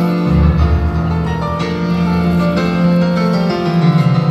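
Grand piano played live, slow sustained chords over a deep bass note that comes in just after the start.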